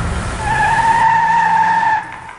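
Car tyres screeching under hard braking, a steady high squeal that starts about half a second in and cuts off at the end, over the low hum of the engine.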